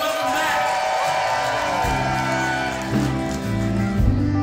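Live band music: string instruments playing sustained notes, with a low bass part coming in about halfway.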